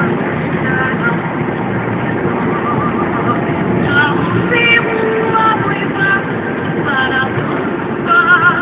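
Steady running and road noise of a moving Toyota car, with music with singing playing over it and growing clearer in the second half.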